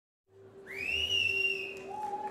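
A high whistle-like tone that glides up and is then held for about a second, over a steady lower sustained tone.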